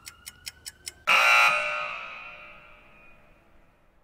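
Countdown-timer sound effect: a clock ticking about four times a second, then about a second in a loud alarm ring that cuts off the ticking and dies away over the next two seconds, marking the timer running out.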